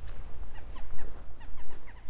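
A run of short, falling high-pitched calls from an animal or bird, several a second, over a low, uneven rumble on the microphone.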